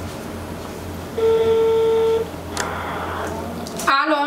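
Telephone ringback tone from a mobile phone held to the ear: one steady beep lasting about a second, starting about a second in, the sign that the called phone is ringing and not yet answered.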